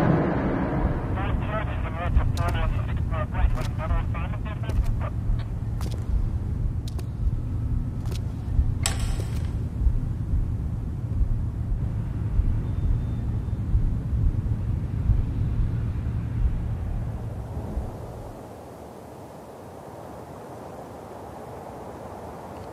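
Low, steady rumbling drone of film-trailer sound design, with scattered sharp clicks and a short warbling sound in the first few seconds. About eighteen seconds in it drops to a quieter, higher hum.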